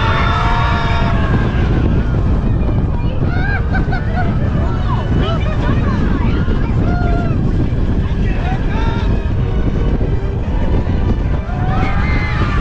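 Incredicoaster, an Intamin steel roller coaster, running at speed: a steady rumble of the train on the track with heavy wind buffeting the microphone, and riders shouting and screaming now and then. Music fades out in the first second.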